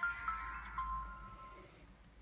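Samsung Galaxy Core Prime's startup chime playing from its speaker as the phone boots after a factory reset: the last notes of a short electronic melody, stepping down in pitch and fading out about a second and a half in.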